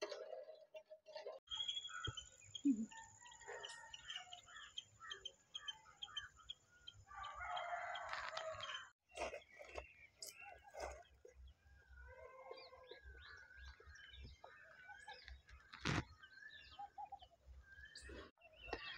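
Faint outdoor ambience of scattered bird chirps, with a rooster crowing once about seven seconds in. A single sharp click comes near the end.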